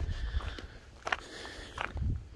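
Footsteps on loose rocks and gravel, with two short sharp crunches, about a second in and near the end.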